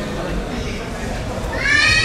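Murmur and shuffle of a sports hall, then near the end one person's high, rising shouted call.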